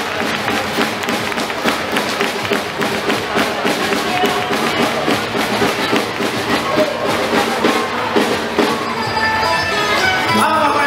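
Traditional Spanish folk dance music with a steady percussive beat, with crowd voices underneath.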